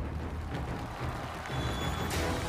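Studio audience applause over stage entrance music, a steady wash of clapping that swells up just before and holds.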